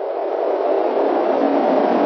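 Sound-effect noise riser for an animated logo reveal: a hissing rush that swells steadily louder.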